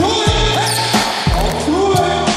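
Hip hop music with a deep bass line, a kick drum and a voice over it.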